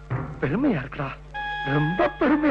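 A man's voice in drawn-out, tearful-sounding vocalising rather than clear words. About two-thirds of the way through, a steady high tone with overtones comes in under it.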